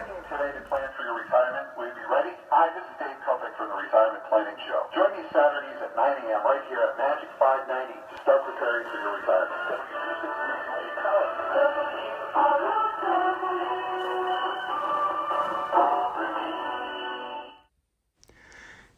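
A radio broadcast of music with a voice, received on an Atwater Kent Model 9 breadboard TRF receiver and played through its 1920s horn loudspeaker. It sounds thin, with no deep bass and no high treble, and cuts off suddenly near the end.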